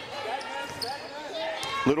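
Basketball being dribbled on a hardwood court, a few bounces, with voices in the arena behind. A commentator starts speaking at the very end.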